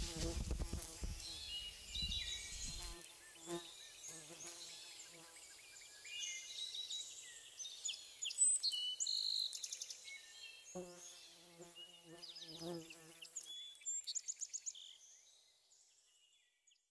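Birds singing and chirping in a summer forest, with footsteps and rustling through damp undergrowth for the first few seconds. The birdsong fades out near the end.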